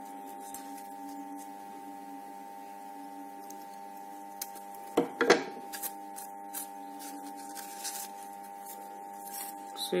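Scissors snipping through folded crepe paper, a few scattered cuts and paper handling, with a louder brief sound about halfway. A steady hum runs underneath throughout.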